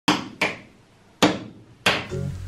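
A small hard toy knocked against a window four times, in uneven pairs: sharp knocks, each ringing briefly.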